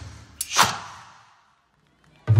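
A single whoosh transition effect about half a second in, over the dying tail of the background music, fading out within about a second.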